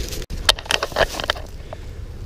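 Dry fallen leaves crackling underfoot, a few sharp crunches in the first second, over a steady low rumble.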